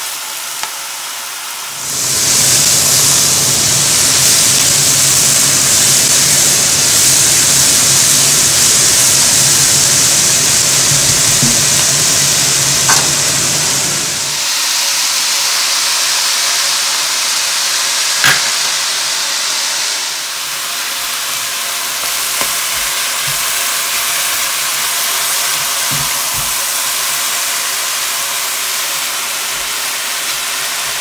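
Diced chicken and vegetables frying in a pot: a loud, steady sizzle that swells about two seconds in and eases off in the last third. A low hum runs beneath it for the first half, and a few sharp clicks of the spatula against the pot come through.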